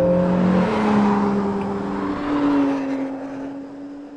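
Acura NSX's twin-turbo V6 running as the car drives past, loudest about a second in and then fading away, its engine note falling slightly in pitch along with the tyre and wind noise.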